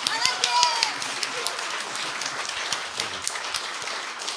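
Audience applause: many hands clapping in a dense, steady patter, with a brief voice from the room about half a second in.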